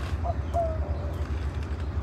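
A bird calling faintly, a few short steady-pitched notes in the first second, over a steady low hum.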